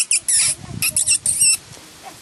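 German shepherd puppies squealing: a quick run of short, high-pitched squeaks over the first second and a half, then quiet.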